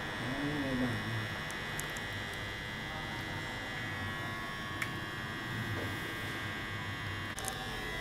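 A steady electrical hum with a high, even whine runs throughout, with a brief vocal murmur in the first second and a couple of faint clicks later on.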